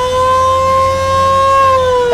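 A loud siren wailing on one long tone that rises slightly, holds, and starts to fall near the end.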